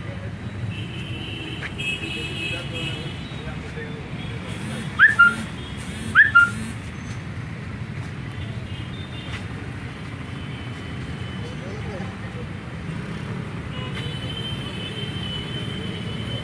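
City street traffic running steadily, with vehicle horns: one held horn early on, two short loud toots about five and six seconds in, and another horn held near the end.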